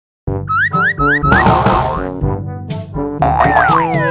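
Playful intro jingle: bouncy music opening with four quick rising boing sounds, then a long falling whistle-like glide near the end.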